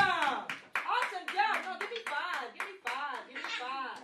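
Several children's high voices in short, arching calls one after another, with sharp hand claps scattered among them.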